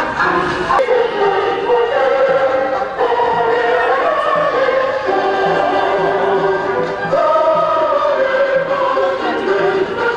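A choir singing with musical accompaniment, in long held notes that move to a new pitch every second or two.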